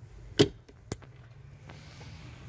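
A hard plastic cargo-floor lid in a Chevrolet Captiva's boot being handled: one sharp knock about half a second in, then a lighter click about a second in.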